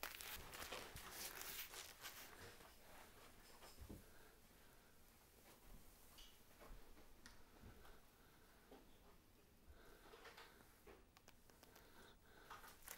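Near silence, with the faint, intermittent scratching of paint brush bristles against a textured ceiling. The scratching is a little louder in the first two seconds.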